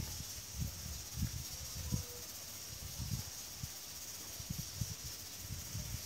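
Quiet background: a steady high-pitched hiss, with a few faint soft knocks.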